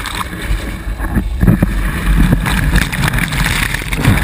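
Loud, continuous splashing and rushing of churning water right against the camera at the water's surface, with rumbling buffets on the microphone.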